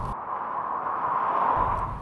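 Tyres of a 2021 Toyota 4Runner hissing on wet pavement as it drives past. The swish swells to a peak about one and a half seconds in, then fades.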